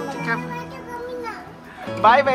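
A young child's voice, vocalizing briefly in the first part, over background music with steady held notes.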